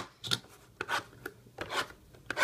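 A thin blade scraping and slitting the plastic wrap on sealed mini-boxes of trading cards, in several short strokes.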